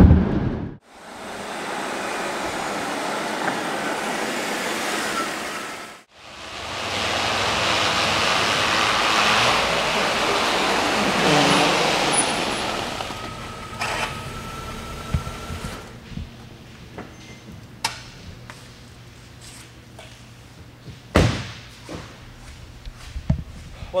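Steady road and wind noise inside the cabin of a 2007 Mercedes-Benz GL450 cruising on the highway, extremely quiet. After a break about six seconds in, the GL450 drives past with a steady rush that swells and then fades, followed by scattered clicks and a sharp thud near the end.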